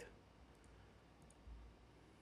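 Near silence, with a few faint clicks and a soft low thump about one and a half seconds in.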